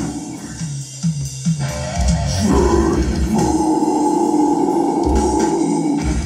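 Loud live metalcore song with heavy distorted guitars and drums. In the first couple of seconds it thins to a few low, repeated guitar notes, then the full heavy riff comes back in about two and a half seconds in.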